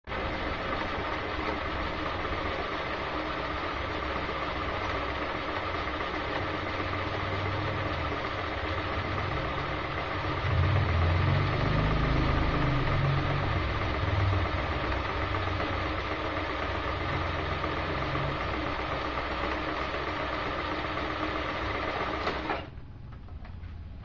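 Multifunction sewing machine running steadily as its needle stitches an embroidery fill into hooped fabric. It is louder for a few seconds midway and stops about a second and a half before the end.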